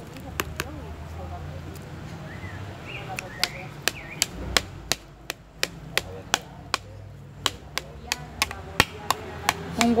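A metal spoon chopping diced ripe avocado in a bowl, its edge knocking against the bottom of the bowl with sharp clicks: a few at first, then about three a second from a few seconds in.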